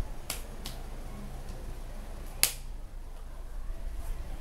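Three sharp claps or slaps of hands striking together, two light ones in the first second and a louder one about two and a half seconds in, over a low steady hum.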